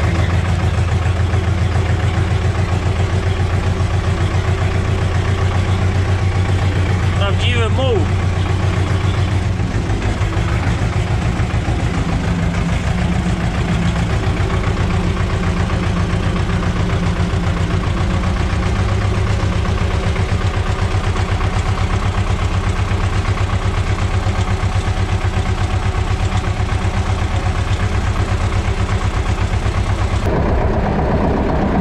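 Tractor diesel engine running steadily soon after a cold start in frost, heard from inside the cab. Its note shifts slightly about ten and nineteen seconds in as the tractor moves off, and there is a brief high curving squeal about eight seconds in.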